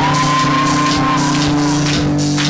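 Live rock band playing with drum kit and electric guitars holding a sustained chord. A high shout rises at the start and holds for about a second.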